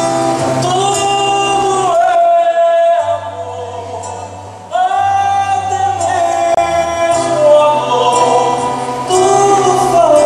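A man singing a slow song live to his own nylon-string acoustic guitar, with long held notes. The voice pauses about three seconds in and comes back just before the five-second mark.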